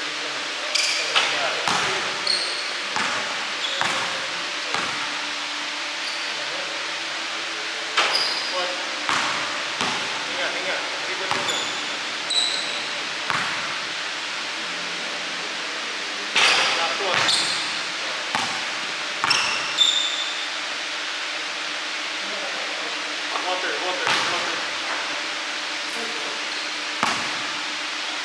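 Basketball bouncing on a hardwood gym floor in irregular runs of bounces as a player shoots around, echoing in the large hall, with short high squeaks and a steady hum underneath.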